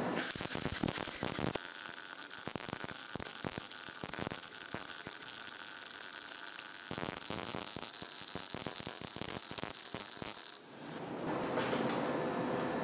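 CO2 MIG welding with the MP-200S multi-process welder in manual (individual) mode, 0.8 mm solid steel wire under 100% CO2 shielding gas: a steady crackling arc full of rapid short pops, cutting off about ten and a half seconds in as the bead ends.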